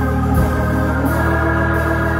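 Organ holding sustained chords, moving to a new chord about a second in.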